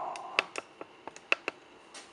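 Light handling noise from a greeting card and a cardboard box: a string of short, sharp clicks and taps, two of them louder, about half a second and a second and a quarter in.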